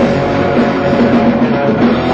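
Heavy metal band playing live: electric guitar, bass and drum kit, loud and steady.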